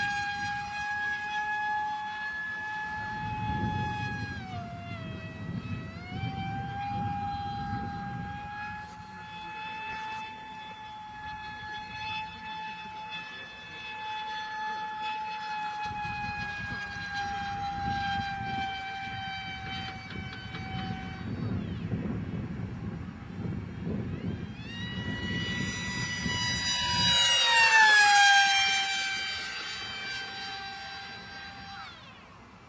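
High-pitched whine of a Funjet RC model jet's brushless motor (HXT 2845, 2700kv, on a 4S pack) spinning an APC 5x5 pusher propeller in flight. The pitch dips briefly a few seconds in. Near the end it grows loudest, and the pitch falls sharply as the plane makes a fast close pass.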